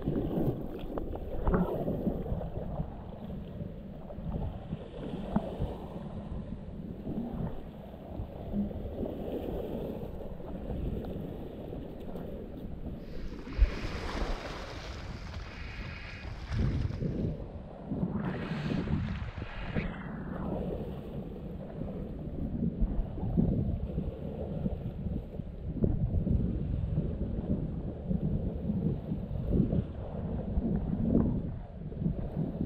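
Shallow seawater sloshing and lapping around rocks close to the microphone, with wind rumbling on the mic. Two louder splashing washes come about halfway through, each lasting a couple of seconds.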